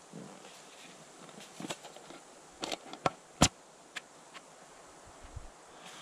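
A few light clicks and taps from a small metal tin being handled and turned in the hands, with one sharper click about three and a half seconds in, over a faint steady background hiss.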